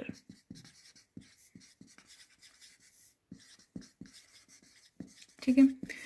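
Marker pen writing on a whiteboard: a quiet run of short, scratchy strokes as words are written.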